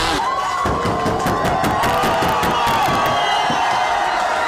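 Crowd of rally fans cheering and shouting, many voices overlapping, with scattered sharp clicks.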